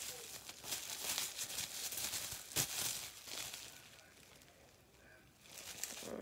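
Bubble wrap crinkling and crackling as it is handled to unwrap a small item, with one sharp crackle about two and a half seconds in. It dies down briefly, then starts again near the end.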